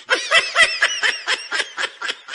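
A person laughing in quick repeated 'ha' pulses, about four a second, loud at first and tapering off.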